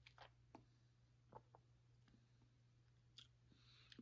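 Near silence over a low steady hum, with a few faint soft clicks from a man sipping beer from a glass and working it around his mouth.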